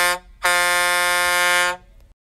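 Truck air horn sound effect: a blast that ends just after the start, then a longer steady blast lasting about a second and a quarter.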